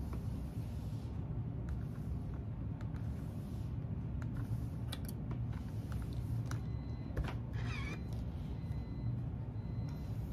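A steam iron is slid and pressed over a cotton quilt block on a wool pressing mat: soft fabric rustling and a few light clicks, over a steady low hum. A brief wavering high-pitched squeak comes about three quarters of the way in.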